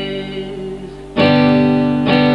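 Acoustic guitar: a strummed chord rings and fades, then a fresh chord is strummed a little over a second in and rings on.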